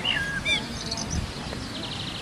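Small songbirds chirping: short whistled up-and-down notes at the start, then quick trilled chirps higher in pitch about a second in and again near the end, over a soft low wind rumble.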